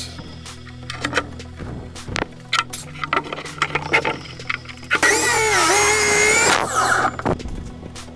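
Chicago Electric miter saw cutting a pine board: the motor whines up, its pitch sags as the blade bites into the wood and recovers as it cuts through, then the blade winds down. A few short clicks and knocks of handling come before it.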